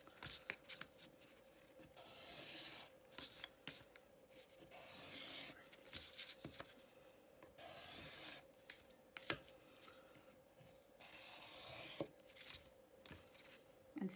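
Marker tip rubbing and scratching on paper as it is drawn around the edge of a round plastic tracer to outline circles. It comes in several strokes about a second long, a few seconds apart, with a few light clicks between them.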